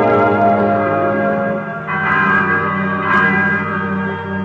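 Bells ringing over sustained background music, with new strikes about two and three seconds in.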